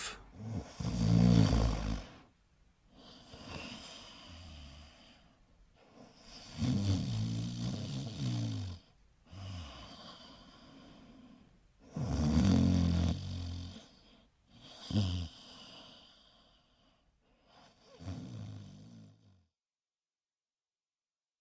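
A person snoring: a loud, low, rattling snore about every five or six seconds, each followed by a quieter breath out, the last two snores weaker. It is the sound clue for someone who has been sleeping.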